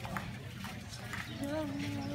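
Footsteps of people walking on sand, about two steps a second, with faint voices of people in the background.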